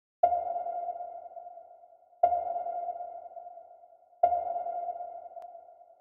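Three identical electronic ping tones, one every two seconds, each starting sharply and fading away.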